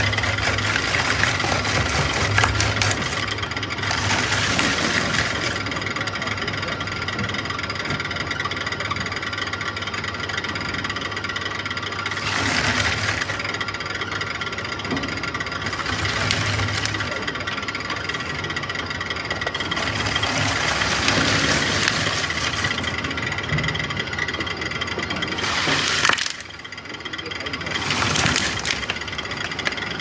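Twin-shaft tire cord fabric shredder running, its toothed rotors turning with a steady whine, and surging louder several times as it shreds pieces of rubberised cord fabric.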